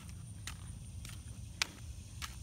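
Footsteps on an asphalt road: a few short scuffing steps, the clearest near the end, over a low steady rumble.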